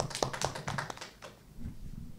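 A small group of people clapping, the applause thinning out and stopping about a second in.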